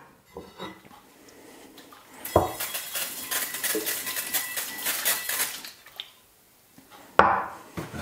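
Aerosol non-stick baking spray hissing onto the plates of a cast iron waffle iron for about three and a half seconds, starting a little past two seconds in. A hard clank of the cast iron plates being handled comes near the end.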